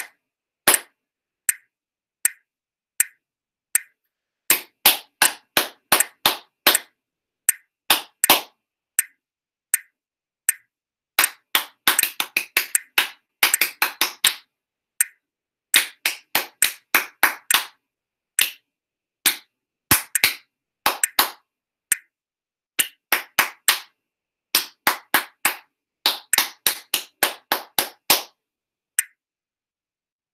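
Hand claps tapping out a written rhythm exercise: single sharp claps in groups of quick eighth- and sixteenth-note figures, broken by pauses. The first part is at a metronome marking of 80 and the second, from about halfway, at 68. Each long note gets only one clap with no sustain.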